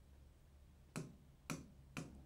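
Three short, sharp clicks about half a second apart, in otherwise near-quiet room tone.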